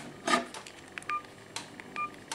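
Buttons pressed on a Fly Ezzy 5 feature phone's keypad: about four short key clicks, some with a brief high electronic key beep, the first the loudest.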